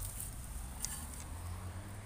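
Small dog digging in loose garden soil: faint, scattered scratches of its paws in the dirt over a low steady rumble.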